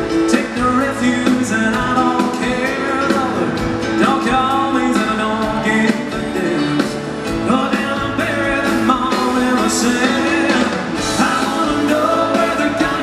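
A live band plays an upbeat country-pop song at full volume, with a male voice singing the melody over it.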